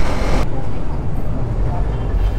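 Motorcycle riding on a road: wind rushing over the bike-mounted microphone with a low engine and road rumble. The hiss stops abruptly about half a second in, leaving a lower rumble.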